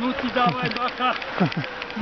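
A man's voice making a quick run of short, strained sounds without clear words, several of them falling sharply in pitch.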